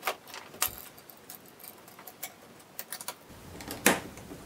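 Light metallic clicks and rattles of a steel hose clamp band being threaded through a hole drilled in a plastic mower discharge chute, with a louder click near the end.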